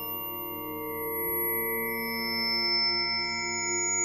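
Electronic music synthesised in SuperCollider: several pure sine tones held together as a steady drone. New, higher tones join partway through.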